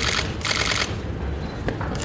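Press camera shutters firing in rapid bursts: a short burst at the start and a longer one about half a second in, then a single click near the end.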